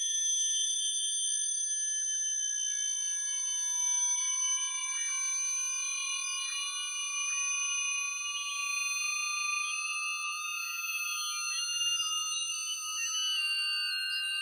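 Electronic acousmatic music: many high, steady sine-like tones layered together, several shifting in small pitch steps or slowly gliding, with no low sounds at all.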